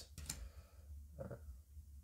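Faint clicks and light rustles of paper Flesh and Blood trading cards being shuffled through by hand, over a steady low hum. A brief hesitant "uh" comes about a second in.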